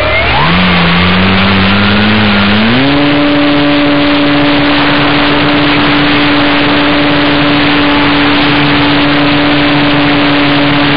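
E-flite Beaver RC plane's electric motor and propeller, heard from on board, throttled up for takeoff: the motor's pitch rises in two steps over the first three seconds, then holds steady under a loud rush of propeller wash and wind over the microphone.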